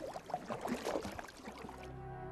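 Faint water splashing and sloshing from paddling a small boat, with orchestral string music coming in near the end.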